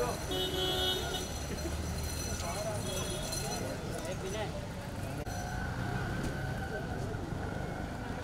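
Outdoor traffic ambience: a steady low rumble of vehicles under indistinct background voices, with brief high-pitched tones about half a second and three seconds in.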